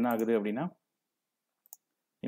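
A man's voice briefly, then a single faint computer mouse click near the end.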